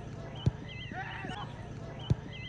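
A football kicked during a dribble: a sharp thud, followed by high, wavering shouts from spectators.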